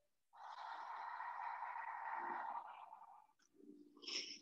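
A person's long, audible breath of about three seconds, drawn through the mouth as one even hiss: a slow paced yoga breath.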